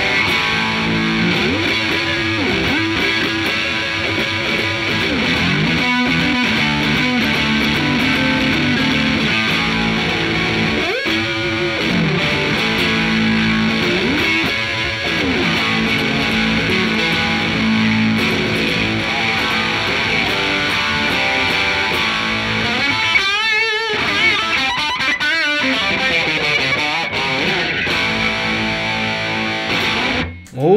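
Fender Custom Shop 1964 Stratocaster Relic electric guitar played through a Fender Twin Reverb amp and a Red Rox pedal, with a driven tone. It plays a continuous lead line full of string bends, with wide vibrato on held notes near the end.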